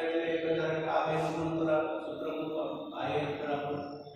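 A man's voice speaking in long, drawn-out, level tones, with brief breaks about two and three seconds in.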